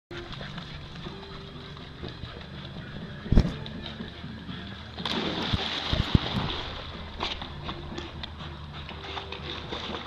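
A dog plunging into a swimming pool and paddling: a sharp thump about three and a half seconds in, then a loud burst of splashing water for about two seconds, settling into lighter splashes.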